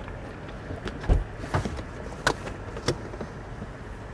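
Car doors being handled while moving around an SUV: a few scattered clicks and knocks, with a heavier low thump about a second in.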